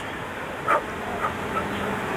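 Honey bees buzzing around an open hive, a steady hum, with a brief sharper sound about two-thirds of a second in.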